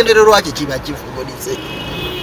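A man's voice talking, loud for the first half second and then quieter, with a steady high tone coming in near the end.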